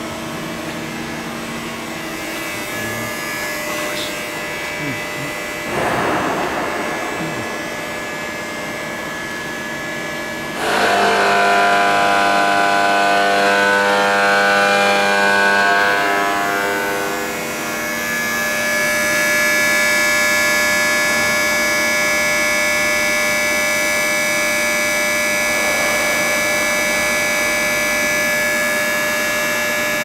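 CNC vertical turning lathe running under power, a steady machine whine made of several tones. About ten seconds in it jumps louder with added tones, then shifts and briefly dips before settling into a steady run again, with a short hiss around six seconds in.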